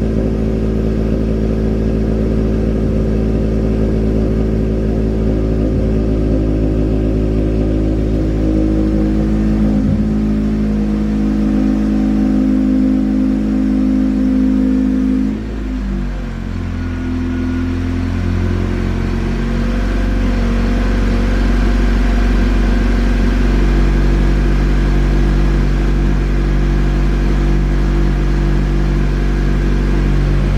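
A car engine idling steadily, heard close at the exhaust tip. About halfway through the sound dips briefly and gives way to a deeper, steadier hum heard from inside the car's cabin.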